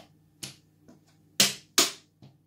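Wooden draughts pieces clicking against a wooden board as they are moved and taken off during a capture sequence: a light click about half a second in, then two louder clicks in quick succession near the end.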